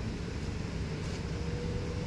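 Steady low hum and rumble of a Honda car's engine running at idle, with a faint steady tone over it.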